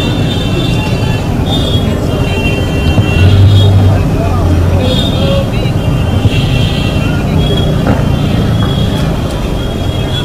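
Motorcycle engines running steadily as a procession of motorbikes rides past, with indistinct voices mixed in.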